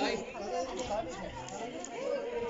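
Chatter of people talking, with voices overlapping.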